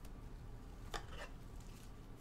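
Donruss Optic basketball cards being handled: one short, sharp card flick about a second in, then a softer one just after, over a low steady hum.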